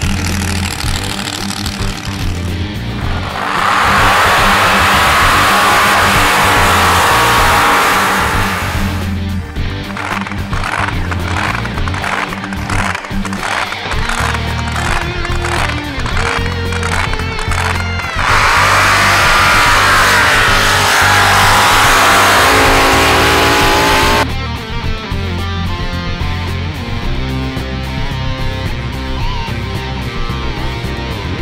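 Rock music with a stepping bass line and a steady drum beat, and two loud, dense stretches of about six seconds each, about four and eighteen seconds in.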